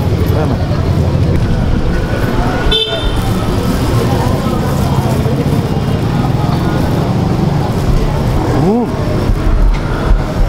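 Busy street ambience: a steady low rumble of traffic and crowd chatter, with a short high-pitched toot about three seconds in and a voice rising and falling in pitch near the end.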